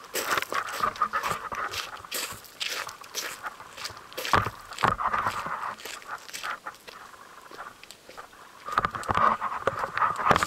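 Footsteps crunching over dry fallen leaves and gravel, an uneven run of crunches that is loudest a little before halfway. A steady high-pitched sound is heard at the start and again near the end.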